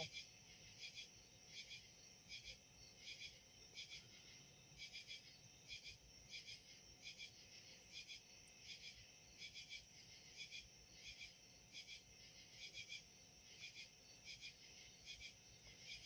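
Faint night chorus of crickets chirping in a steady, pulsing rhythm.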